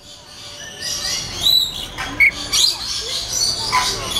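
Lorikeets giving a few short, high chirps and squeaks at intervals, with a sharp one about two seconds in and a short falling call near the end.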